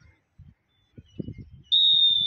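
Referee's whistle: one long, steady, high-pitched blast that starts abruptly near the end, the signal to start play.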